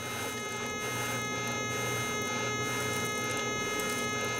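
Soft, steady breath blowing across a plastic sniping spoon of ground clay paydirt, winnowing off the lighter material, over a steady electrical hum with several thin, high, steady tones.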